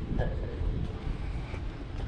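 Outdoor crowd ambience: a steady low rumble, typical of wind on the microphone, with faint voices of people nearby.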